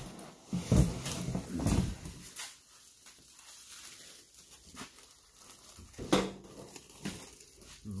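A plastic-wrapped propane wall heater being lifted out of its cardboard carton: cardboard, foam packing and plastic wrap rubbing and knocking. The noise comes in a few short spells about a second in, with a sharp knock about six seconds in.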